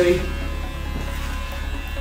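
Electric hair clippers buzzing steadily as they cut hair over a comb.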